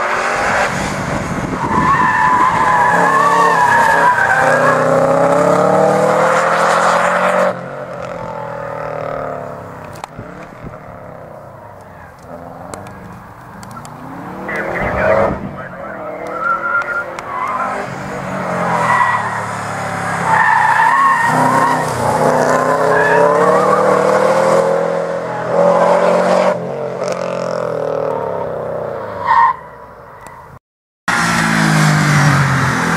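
Subaru Impreza WRX driven hard through tight cone turns: its tyres squeal and its turbocharged flat-four engine revs up and down. There are two long loud spells of squealing, one in the first quarter and one from the middle to near the end, with quieter engine running between.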